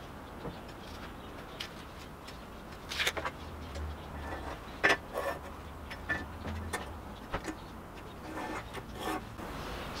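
Scattered light clicks and taps from measuring and marking out heavy steel angle with a tape measure, over a low steady hum.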